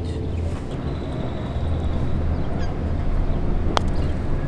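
Steady outdoor background noise, heavy in the low end like wind rumble on the microphone, with a single sharp click near the end.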